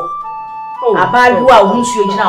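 Background music with long held notes, and a voice talking over it from just before a second in.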